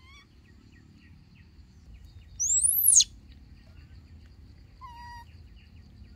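Birdsong: faint scattered chirps, broken about halfway through by one loud, very high whistle that sweeps up and then drops steeply. A short, lower call follows near the end.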